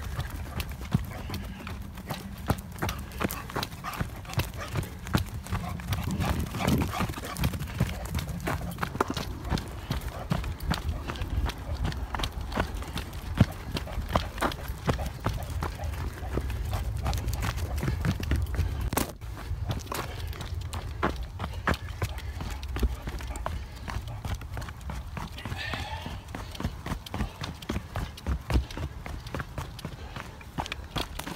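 Running footfalls on a packed-dirt forest trail, a quick steady patter of thuds heard from a hand-held phone carried by the runner. Under them is a low rumble of wind and handling on the microphone, and there is one sharp click about two-thirds of the way through.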